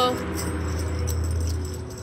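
Tambourine jingles shaken lightly in a pause between sung lines, over a low steady hum from the PA that stops shortly before the end.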